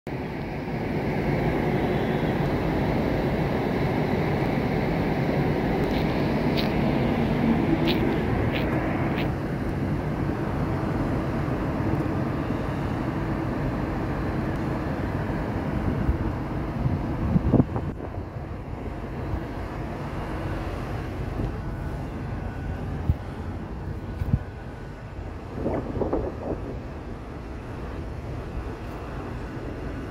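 Steady roar of city noise heard from high up, with a faint low hum running through it. It is louder for the first half, then drops after a sharp knock about halfway through.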